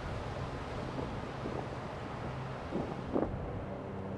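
Steady outdoor background noise, with wind on the microphone and a low steady hum underneath. There are a couple of faint brief sounds about three seconds in.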